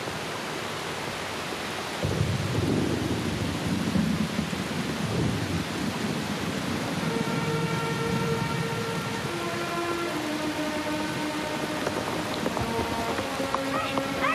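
Heavy rain pouring steadily, with a low rolling rumble of thunder coming in about two seconds in. Soft, sustained music notes enter about halfway through and hold under the rain.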